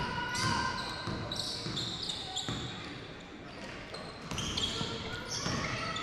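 Live basketball in a gym hall: sneakers squeaking on the hardwood floor in short high chirps, the ball bouncing in a few sharp knocks, and voices in the background.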